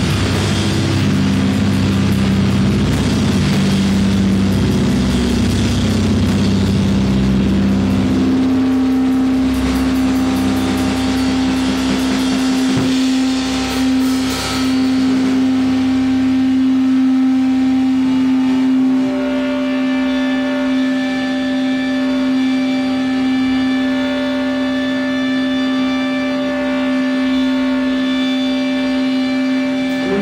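Loud live rock band playing with drums and distorted electric guitar. About eight seconds in, the busy playing drops away and a single distorted note from a guitar amplifier is held as a steady drone, growing richer in overtones past twenty seconds in.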